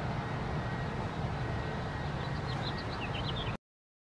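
Garden background: a steady low rumble, with a few short high chirps of a small bird near the end. The sound cuts off suddenly about three and a half seconds in.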